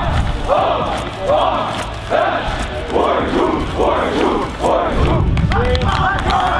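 A team of football players shouting in unison during warm-up calisthenics, one short call about every 0.8 seconds, about six in all, stopping about five seconds in.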